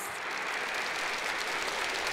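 Large audience applauding steadily, a dense even patter of many hands clapping.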